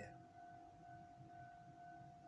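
Near silence: room tone with a faint, steady high-pitched tone.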